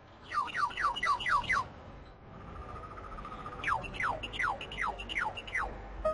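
Bird-like chirps: two quick runs of short downward-sliding chirps, about five a second, with a held whistle-like tone between them, over a low steady hiss.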